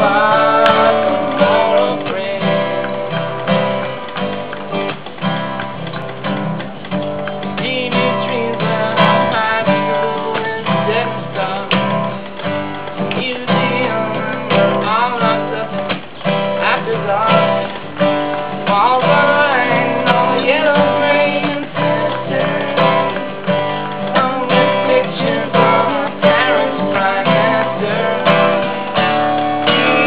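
Acoustic guitar being played continuously, its low notes in a steady repeating rhythm.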